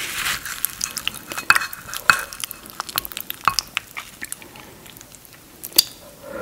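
Wooden spoon digging into a cheese-topped shepherd's pie in a bowl: soft, wet, sticky squelches of mashed potato and melted cheese, with scattered clicks and taps of the spoon against the bowl and one sharper click near the end.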